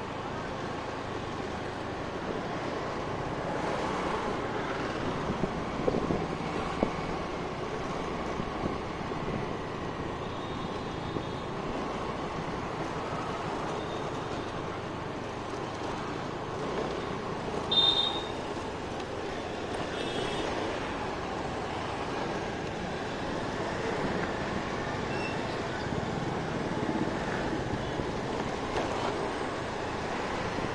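Scooter riding along a town road: steady engine, tyre and wind noise with passing traffic. A short high-pitched tone, the loudest moment, sounds about two-thirds of the way in, with fainter ones shortly before and after.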